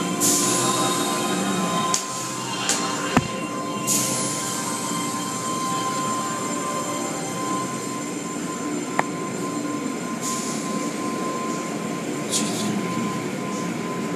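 Automatic tunnel car wash machinery running: a steady mechanical hum with a constant high tone, broken by several bursts of hissing lasting a second or two each, and one sharp knock about three seconds in.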